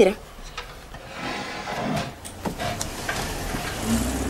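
A wooden chair scraping and knocking as it is pulled out and sat on, with a few sharp wooden knocks.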